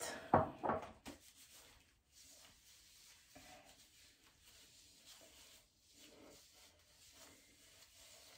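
Gloved hands and a comb rubbing and rustling through hair, faint and irregular, with a louder brief rustle in the first second.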